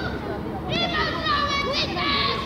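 Children's voices shouting during a youth football game. The main call is high-pitched, begins a little before the first second and lasts about a second.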